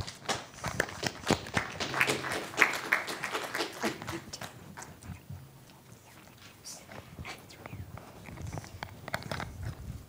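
Handling noise from a handheld microphone being passed from one person to another: a sharp knock at the start, then a run of clicks, rubs and rustles that thin out after about four seconds.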